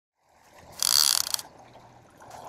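Clicker ratchet of a Shimano Tiagra 130 lever-drag trolling reel buzzing as the spool spins, a loud burst of about half a second that trails off in a few separate clicks.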